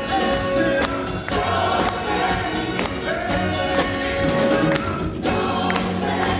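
A live soul band playing with drums, horns and guitars on a steady beat about twice a second, with lead and backing vocals singing over it.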